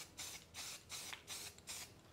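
Aerosol rattle can of Rust-Oleum 2X Ultra Cover white primer spraying in about six short, faint bursts of hiss, roughly three a second: quick light passes of primer over small 3D-printed parts.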